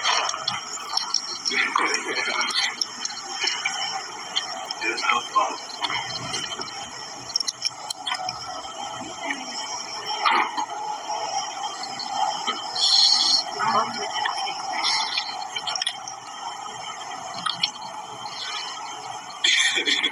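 Indistinct talking, with no words clear enough to make out.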